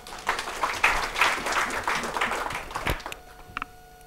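Brief applause from a small audience, a dense patter of hand claps that dies away about three seconds in.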